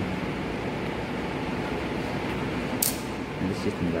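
Steady fan hum in the room, with one short sharp metallic snap about three seconds in as a rubber dam clamp is released with clamp forceps and the rubber dam sheet is pulled off a dental mannequin's teeth.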